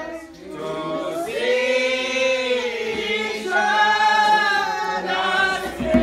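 Church congregation singing a hymn together without instruments, in long, slow held notes. The singing dips just after the start and swells again about a second in.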